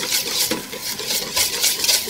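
Wire whisk beating egg yolks and cherry wine in a stainless steel bowl for a sabayon. The wires scrape and click against the metal in quick, repeated strokes.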